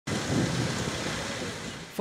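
A vehicle engine running: a steady, noisy rumble with no clear pitch, easing off slightly near the end.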